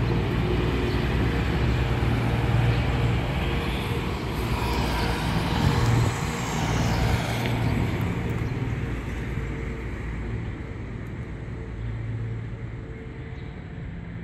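Road traffic noise with a steady low engine hum. A vehicle grows louder and passes about four to seven seconds in, then the noise gradually eases off.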